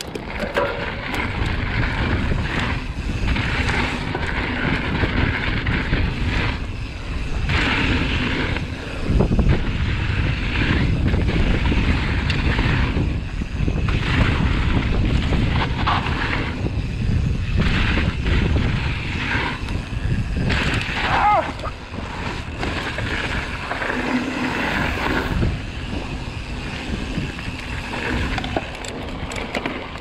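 Mountain bike ridden fast down dirt jump lines, heard through a camera on the bike: heavy wind buffeting on the microphone over the rumble of knobbly tyres on packed dirt, rising and falling in loudness with the terrain.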